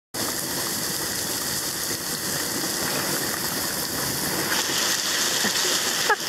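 Small waterfall's spray pouring and splashing steadily, with the falling water drumming onto and into a plastic water bottle held in the stream to fill it. It gets slightly louder and brighter in the last second or so.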